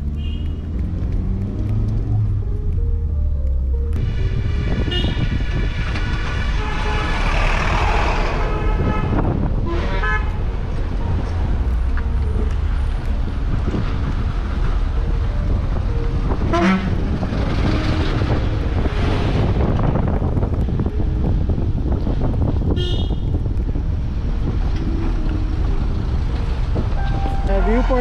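Car engine and road noise heard from inside a moving car climbing a winding hill road, with several short vehicle-horn toots.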